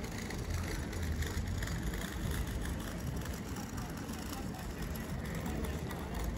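Open-air town-square ambience: a steady low rumble with faint, indistinct voices of passers-by.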